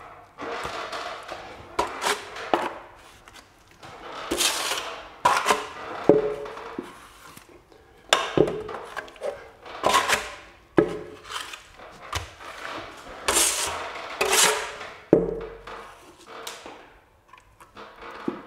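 Steel plastering trowel scraping wet skim plaster off a hawk and spreading it across a plasterboard ceiling. It comes as irregular sweeping scrapes every second or two, with sharp clacks of the trowel against the hawk.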